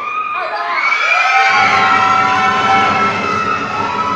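Theatre audience cheering as the dance music ends, with long high-pitched shouts and whoops held over a rising crowd din.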